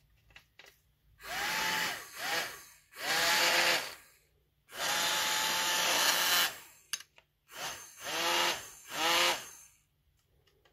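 Small DC fan motor of a cheap mini UV nail dryer whirring in six short bursts, each rising in pitch as it spins up and falling as it runs down when its push switch is pressed and let go.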